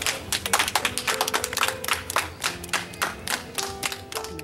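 Children clapping their hands in a quick, uneven patter over background music.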